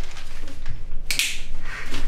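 A brief rustle of newspaper pages about a second in, over a steady low hum.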